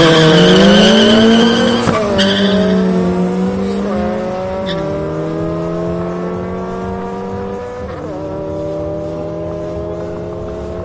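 Opel Astra and Honda Civic engines at full throttle, accelerating away from the start line in a drag race. Their pitch climbs and drops sharply at each upshift, with gear changes about two, four, five and eight seconds in, and the sound fades as the cars pull away.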